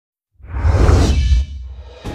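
Whoosh sound effect with a deep low rumble, part of a TV news channel's logo ident. It swells in about half a second in, holds for about a second, then dies away.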